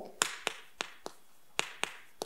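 Chalk tapping against a chalkboard while characters are written, about six sharp, short taps.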